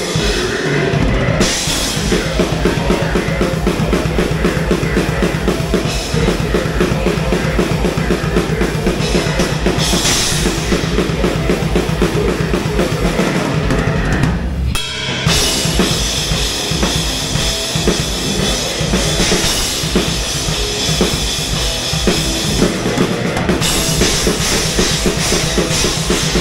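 Metal band playing live, with the drum kit loud in front: fast, steady bass drum strokes under cymbals and distorted guitars, broken by a short pause about fifteen seconds in.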